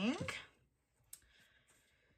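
A woman's spoken phrase trails off, then a single faint click just after a second in, followed by a brief faint scratchy trace, as a small hand tool handles stickers on the paper page.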